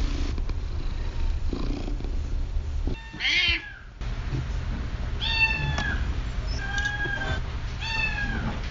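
Domestic cat meowing about four times over a steady low hum: one wavering call about three seconds in, then three shorter calls in the second half.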